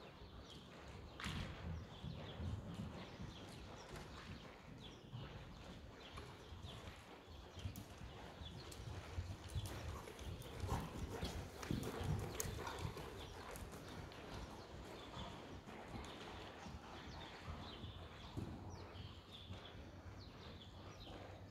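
Horse's hoofbeats on a soft arena surface as it trots, a run of irregular muffled thuds that grow louder as the horse passes close, about ten to thirteen seconds in.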